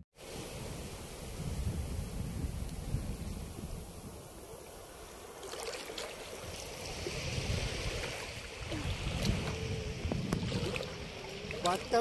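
Shallow sea water lapping and sloshing, with wind buffeting the microphone as a low rumble. About halfway through, the water sound turns brighter and splashier.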